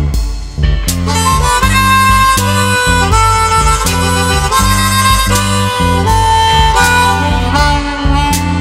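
Blues instrumental break: a harmonica solo of long held notes coming in about a second in, over a repeating bass and guitar riff.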